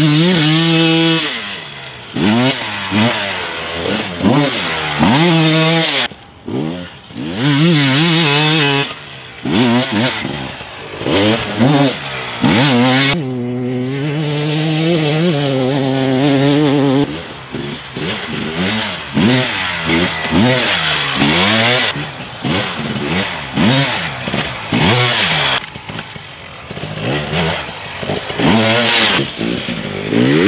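Fuel-injected 300cc two-stroke engine of a KTM 300 XC-W dirt bike being ridden hard off-road, its pitch climbing and falling back again and again as the throttle is worked. Around the middle it holds a steadier note for a few seconds.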